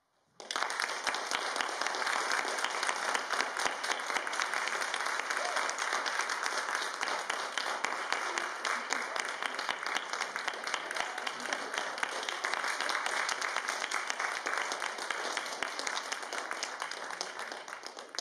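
Audience applause, a dense steady clapping that starts abruptly about half a second in and thins out near the end.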